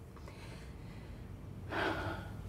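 A single heavy breath, a sigh, near the end, after a short stretch of quiet room tone.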